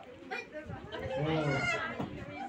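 People's voices, with a drawn-out, wavering vocal call that swells about a second in.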